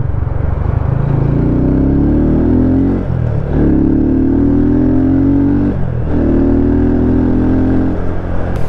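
Italika RT250 motorcycle engine accelerating hard through the gears: its pitch climbs, drops at a gear change about three seconds in and again near six seconds, then climbs again. This is a test run on a carburettor air-jet adjustment meant to cure bucking under full throttle, and the rider judges that it worked.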